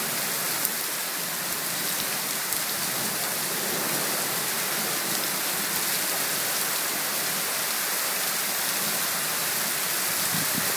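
Heavy rain falling steadily onto a flooded street, with a few sharper drop ticks.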